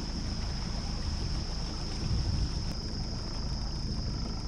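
Small fishing boat under way on a creek: a steady low motor-and-water rumble with no change in pace, under a constant high-pitched drone of insects.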